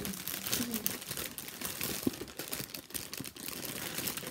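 Clear cellophane wrapping crinkling and crackling in an irregular stream as it is handled and pulled open, with one sharp tick about halfway through.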